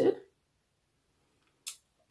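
A woman's words trail off, then near silence: room tone, broken near the end by one brief soft hiss just before she speaks again.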